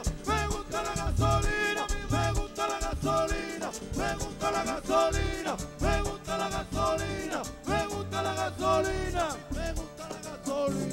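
Live merengue band playing: a quick run of short, repeated pitched phrases, each ending in a falling slide, over a pulsing bass line and percussion.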